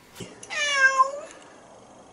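Domestic cat meowing once: a single drawn-out meow of just under a second, starting about half a second in, that dips slightly in pitch and rises again at the end.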